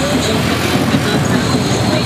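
Loud, steady street din of a procession: vehicle engines running as the float truck and motorbikes pass close, mixed with crowd voices.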